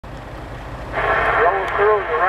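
A voice comes over a CB radio in the truck cab from about a second in, thin and cut off at the top. Under it runs the low, steady rumble of the truck's idling engine.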